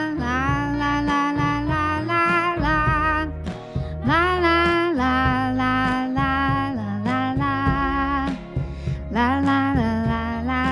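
A song: a woman singing in phrases of long held notes with vibrato over a band accompaniment with a steady bass line.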